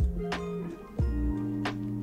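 Background music: held notes over a soft, steady beat.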